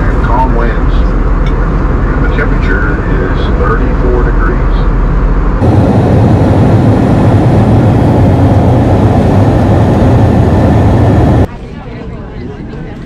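Jet airliner cabin noise in flight: a steady low engine drone and rushing air, with faint voices in the first half. About halfway through it turns to a louder, fuller rush, then cuts off sharply near the end, giving way to quieter room sound.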